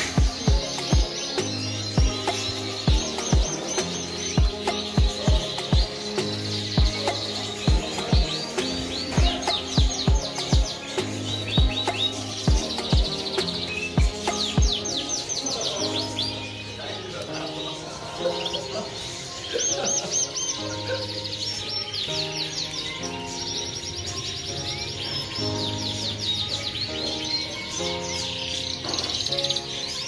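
Many caged canaries chirping and trilling in quick high sweeps throughout, over background music with held low chords and a steady kick-drum beat about twice a second; the beat drops out about halfway through.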